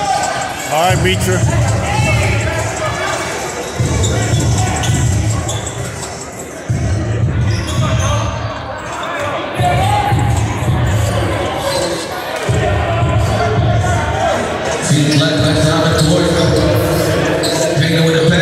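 Basketball dribbled on a hardwood gym floor, echoing in a large hall, over music with a bass line that shifts every few seconds and crowd voices.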